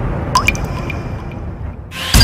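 Low sound-design drone with a single water-drop 'plink' effect about a third of a second in, a short rising blip, then a fade toward quiet near the end.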